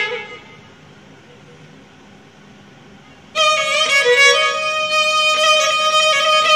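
Solo violin improvising in the Persian Avaz-e Dashti mode: a phrase ends and rings off at the start, followed by a pause of about three seconds. A new phrase then enters on a long held note with ornaments and runs on.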